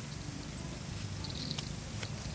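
Steady low rumble of outdoor background noise with a faint hiss and a few faint ticks.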